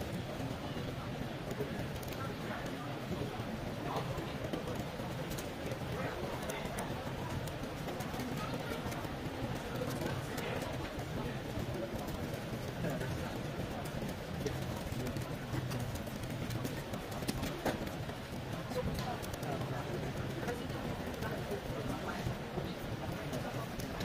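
Indistinct background chatter of many people in a large hall, steady throughout, with scattered faint light clicks.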